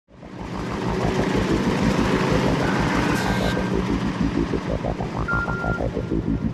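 Intro soundtrack fading in: a fast, even low throbbing pulse, about seven beats a second, under a noisy wash, with a short high held tone near the middle and another near the end.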